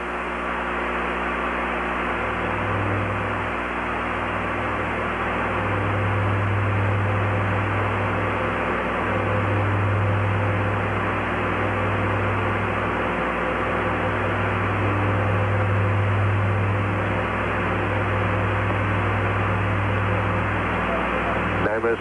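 Steady rushing noise with a low hum, fading in over the first couple of seconds and then holding level.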